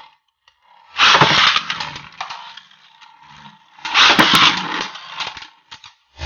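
Beyblade Burst spinning tops launched into a plastic Zero-G stadium, two loud launches about a second in and about four seconds in. Each is followed by the tops spinning, rattling and clashing against each other and the bowl.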